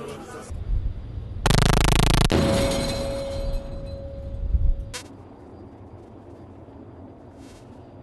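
A ship's deck gun firing: a sudden loud blast about one and a half seconds in lasting under a second, then a long fading echo. A short sharp crack follows about five seconds in.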